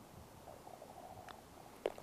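Quiet open-air lull, then a single short click near the end as a putter strikes a golf ball on the green.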